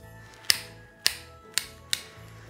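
Pruning secateurs snipping a fir branch: four sharp cuts about half a second apart.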